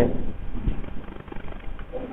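Pen writing on a notebook page, with faint scratches and taps and a dull thump less than a second in.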